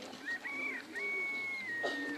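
A bird's high whistled calls: a short note in the first half-second, then one long steady whistle that drops a little in pitch near the end. A lower steady tone begins just before the end.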